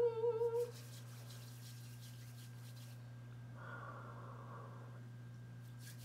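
A woman hums a short, appreciative "mmm", one slightly wavering note lasting under a second at the start. After it come only faint breaths as she inhales peppermint oil from her cupped palms.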